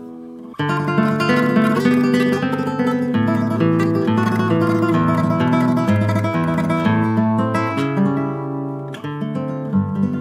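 Solo nylon-string guitar played fingerstyle: after a brief lull the playing picks up again about half a second in and runs on as dense, continuous notes, with a short dip and then a sharp accent near the end.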